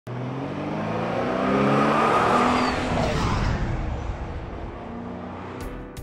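A car engine running as the car passes by, swelling to its loudest about two seconds in and then fading away.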